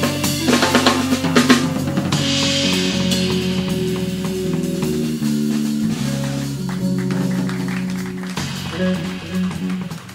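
A live jazz-fusion trio plays: a Pearl drum kit with snare, bass drum and cymbals over electric bass and semi-hollow electric guitar. A quick run of drum strikes comes in the first second and a half, then a cymbal wash, with the bass line stepping through held notes underneath.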